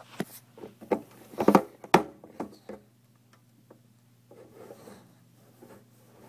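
Handling noise from a hand-held recording device: a quick run of taps and scrapes in the first three seconds, loudest about a second and a half in, then fainter rubbing. A steady low hum runs underneath.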